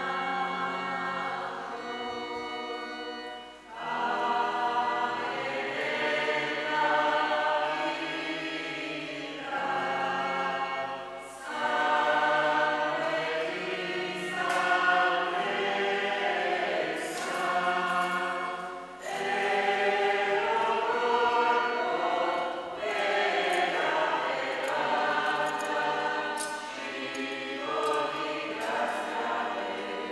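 Church choir singing a hymn, in long sung phrases with short breaks between them.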